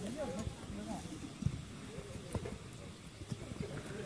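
Indistinct voices of several people talking at a distance, with a few sharp knocks in the middle.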